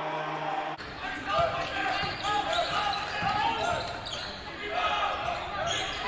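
A basketball being dribbled on a hardwood gym floor, with repeated low thuds under players' and spectators' voices echoing in the hall.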